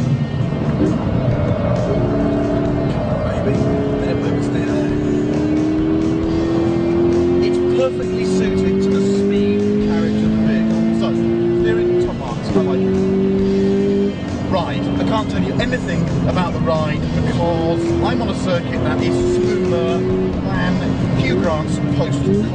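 Toyota GT86's naturally aspirated flat-four boxer engine under hard acceleration on track, heard on board. Its pitch climbs slowly for several seconds, then drops back and climbs again a few times as gears change.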